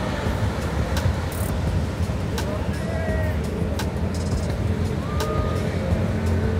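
Beach ambience: a steady rush of surf and wind on the microphone, with faint voices of people nearby and a few brief clicks.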